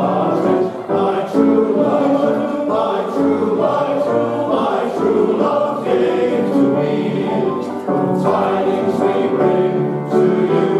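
Male voice choir singing a Christmas song in several-part harmony, holding chords that change every second or so.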